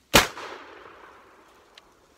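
A single blast from a Mossberg 12-gauge pump-action shotgun, a sharp report just after the start followed by about a second of echo dying away. A faint click comes near the end.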